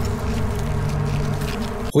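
A steady, low buzzing drone with a fly-like hum over a deep rumble, from a horror film's sound track.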